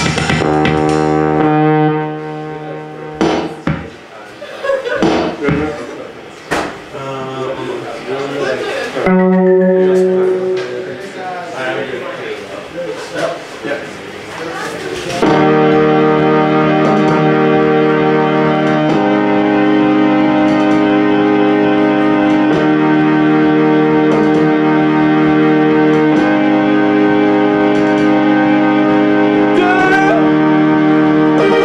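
Electronic keyboards played live. A held chord opens, then comes a quieter, unsettled stretch of scattered notes and voices. From about halfway on, loud sustained chords change every three to four seconds.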